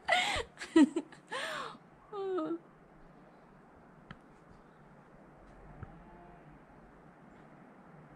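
A woman's voice making short wordless sounds and laughing for the first two and a half seconds, ending in a brief wavering call. After that only faint outdoor hiss, with a small click about four seconds in.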